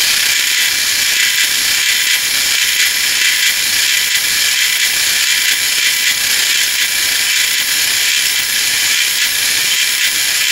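A metal lathe running steadily while its tool cuts an aluminium workpiece, throwing off curly swarf. The noise is steady and mostly high-pitched, with a thin, steady whine running through it.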